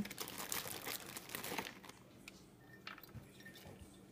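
Plastic food packaging crinkling and rustling in the hands as shredded carrots are taken out and dropped into jars, busiest in the first two seconds, then a few soft isolated clicks.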